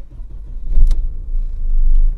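A VW Passat B5's 1.8-litre ADR four-cylinder petrol engine starting up, loudest about a second in, then running steadily, heard from inside the cabin. It starts normally with a newly replaced camshaft position (Hall) sensor.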